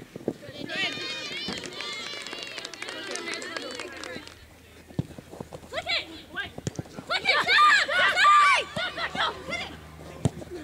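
Female soccer players shouting and calling to one another on the pitch, loudest about seven to nine seconds in, with a few sharp thuds in between.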